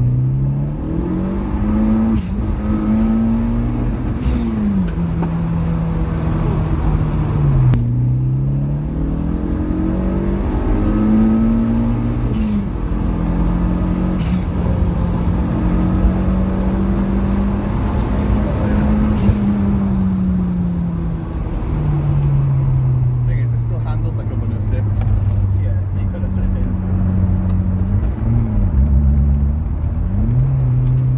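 Turbocharged Peugeot 106 GTI engine heard from inside the cabin under hard acceleration. Its pitch climbs and drops sharply several times as it goes through the gears, then holds a steadier, lower drone in the second half.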